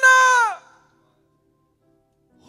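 A man's loud, high-pitched shout held on one pitch, breaking off about half a second in.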